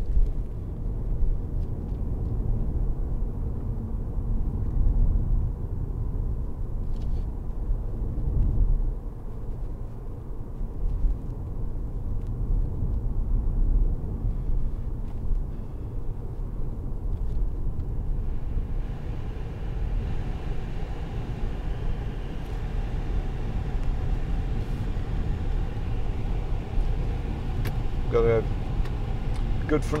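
Cabin noise of a BMW 520d saloon on the move: a steady low rumble of tyres on the road and the diesel engine. A brighter hiss joins about two thirds of the way through.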